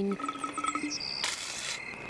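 Calm outdoor ambience of small birds chirping and insects, with a short soft hiss of noise a little past the middle.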